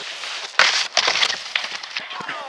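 Snowboard sliding over snow, a hissing scrape of the board's base and edges, with a sharper louder scrape about half a second in and another about a second in.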